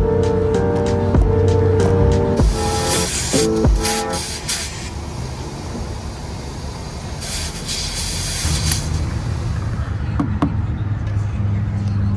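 Background music for the first four seconds or so, then air hissing in two bursts from a gas-station air hose chuck pressed onto a flat van tyre's valve. A steady low hum comes in near the end.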